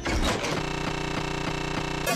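A steady mechanical-sounding buzz made of several held tones, pulsing evenly about four times a second.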